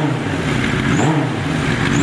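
The inline-four engine of a 1986 Suzuki GSX-R750R Suzuka 8 Hours racer, running on its stand and being blipped. The revs rise and fall about once a second.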